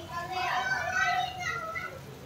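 A young child talking and calling out in a high voice, with no clear words.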